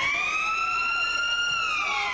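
A siren sounds one long wail: it has just wound up, holds a steady high note, then begins to fall slowly in pitch about three-quarters of the way through.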